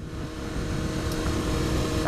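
Honda CBR954RR inline-four sport bike cruising steadily at motorway speed, its engine drone mixed with wind rushing over the microphone.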